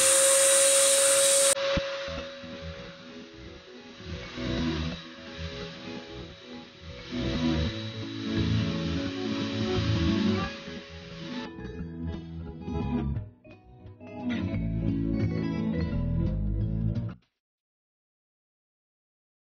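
An electric turbine paint sprayer spinning up: loud hiss with a whine that rises and holds steady, cut off after about a second and a half by background guitar music. The music runs on, with the sprayer's whine faint beneath it for a while, and stops suddenly near the end.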